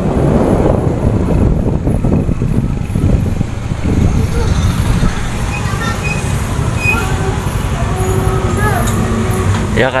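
Motorbike engine running while it is ridden, with a steady low rumble throughout.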